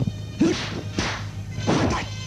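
Kung fu film fight sound effects: three sharp swishes and thwacks of punches and kicks, about one every half second, over a steady low hum from the old tape.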